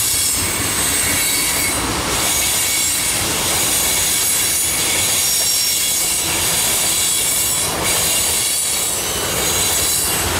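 Freight train tank cars rolling past at close range: a steady rolling noise from the steel wheels on the rails, with high-pitched squealing from the wheels throughout.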